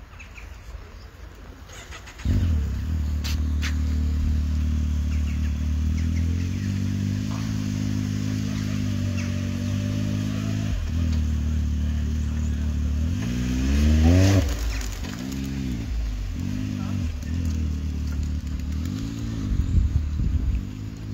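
A side-by-side UTV's engine starts up about two seconds in and idles steadily. In the last third it is revved in several short blips, its pitch rising and falling each time.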